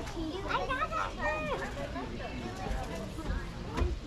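Indistinct high-pitched children's voices, mostly in the first half, over steady outdoor background noise, with a few low rumbles near the end.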